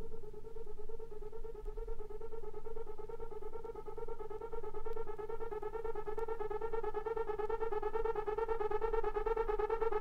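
Trance music breakdown with no beat: a sustained synthesizer tone with a fast rippling shimmer, slowly growing louder toward the end.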